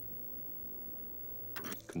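Low, steady rumbling drone under a dramatic pause. Near the end comes a short breathy burst, an intake of breath just before a man speaks again.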